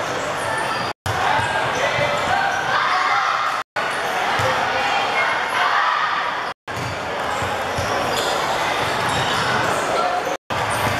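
Gym hall ambience: overlapping chatter and calls of players and spectators with basketballs bouncing on a wooden court, echoing in the large hall. The sound drops out completely for an instant three times, about one, four and six and a half seconds in.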